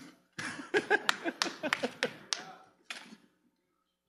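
A few people clapping, scattered single claps mixed with murmuring voices and laughter, dying away by about three seconds in.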